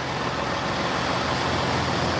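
EMR Regional diesel multiple unit standing at the platform with its engine running, a steady rumble with a low hum.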